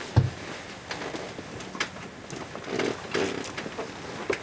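Two people kissing close to the microphone: scattered lip-smack clicks and rustling of clothing, with a dull thump just after the start.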